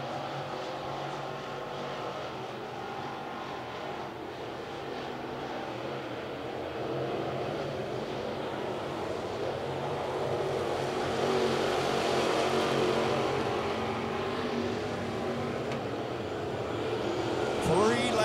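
A field of dirt late model race cars with GM 602 crate small-block V8 engines running at racing speed: a steady drone of many engines together. It swells louder past the middle, then eases off.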